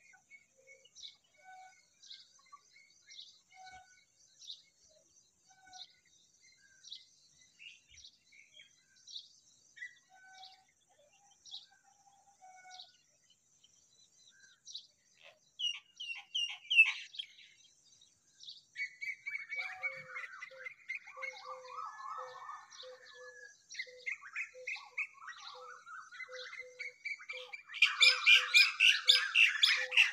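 Baby birds cheeping: faint short chirps repeating through the first half, growing louder and denser about halfway, with busy overlapping calls and a rapid series of pulsed notes, loudest in the last couple of seconds.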